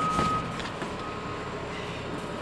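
School bus interior noise: a steady, even hum of the bus with a thin steady high tone that fades out about half a second in.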